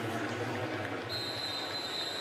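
Steady background noise of a stadium crowd under a TV game broadcast, with a thin, high steady tone coming in about a second in.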